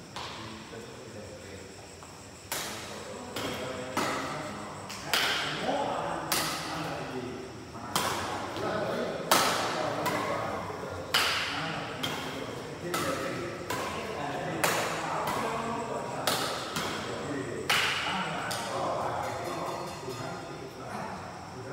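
Badminton rackets striking a shuttlecock in a rally. The sharp hits come roughly once a second from a couple of seconds in, each ringing on briefly in a large indoor hall.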